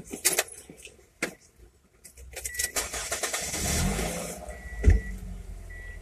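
Low vehicle rumble heard from inside a car, with a hiss that swells and then stops about two-thirds of the way through. A few knocks early on, a thump near the end, and a faint short high beep repeated three times.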